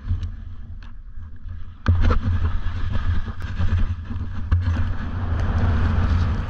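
Wind buffeting an action camera's microphone, then about two seconds in a sudden, louder rush of wind noise and skis sliding over snow as the skier starts down the slope.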